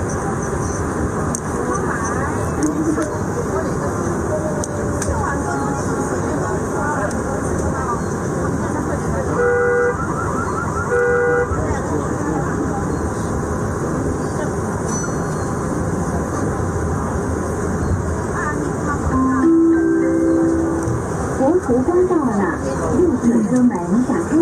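Indistinct chatter of passengers over the steady running noise of a metro train carriage. A horn gives two short toots about ten seconds in.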